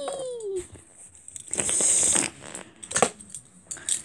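A child's voice trails off in a falling tone. About a second and a half in comes a short hissing whoosh, followed by a few light clicks near the end.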